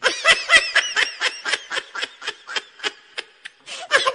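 A laughter sound effect: a snickering laugh in rapid high-pitched bursts, loudest at the start and trailing off over about three seconds. After a short pause another laugh begins just before the end.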